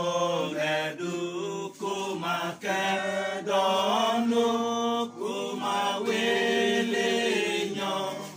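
Unaccompanied singing voices, a slow chant-like song sung in long held notes, with short breaks between phrases about one, two and five seconds in.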